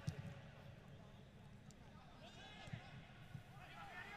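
Faint, distant shouting of footballers on the pitch over a low background hiss, with a dull thump at the very start and another about two-thirds of the way through.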